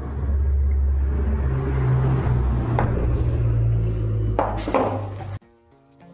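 Metal parts of a dismantled car dynamo being handled on a workbench over a steady low hum. There is a light tap about three seconds in and a louder metallic clatter near the end. The sound then cuts off suddenly, and plucked-string music starts at the very end.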